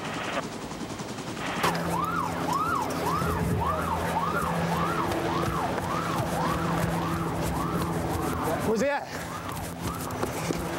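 Police car siren cycling quickly up and down in pitch, about one and a half sweeps a second, over a steady low hum. It starts a couple of seconds in and breaks off near the end with one short upward sweep.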